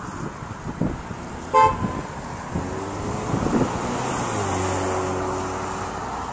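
Distant city traffic with one short, loud vehicle horn toot about a second and a half in. In the second half a steady low-pitched hum sets in and grows a little louder.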